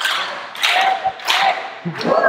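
A room of people laughing together, in two swells.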